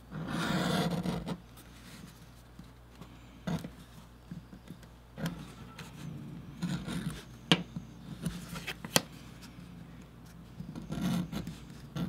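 Edge beveler shaving the edge of a piece of leather: a series of scraping strokes, the first about a second long and the loudest, the rest shorter and softer, with a couple of sharp ticks in between.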